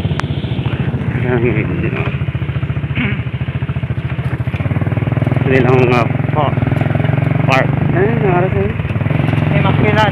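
Motorcycle engine running steadily as it rides along, getting louder about halfway through. Snatches of a person's voice come through over it a few times.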